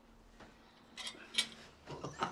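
Quiet room tone with a faint steady hum for the first second, then a few short clicks, the clearest about one and a half seconds in.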